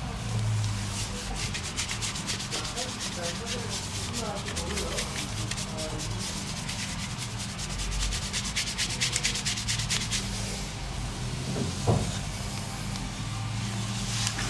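Fingers scrubbing a shampoo-lathered scalp in a head massage: a steady run of quick rubbing strokes that thins out about ten seconds in, with a single short knock near 12 seconds.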